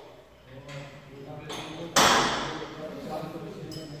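A single sharp metal clang about two seconds in, its ring dying away slowly in the large workshop hall, with faint voices underneath.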